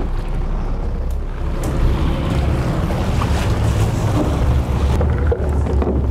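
Boat engine running with a steady low drone, under the rush of water and wind.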